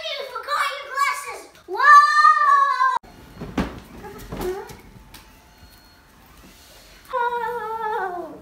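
A child's voice shrieking and screaming in high, sliding cries for about three seconds. After an abrupt cut come a few knocks and rustling handling noise, then a long moaning voice that falls in pitch near the end.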